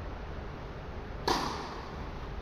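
A single sharp crack of a tennis racket striking a ball about a second and a quarter in, followed by a short echo in the large covered court hall.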